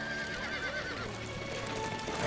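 A horse whinnying once, a wavering call that falls slightly over about the first second. Underneath it, sustained film-score music plays.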